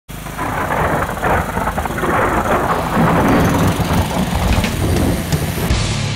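Large angle grinder running loud and uneven, its motor and disc noise rising and falling; it cuts off abruptly shortly before the end.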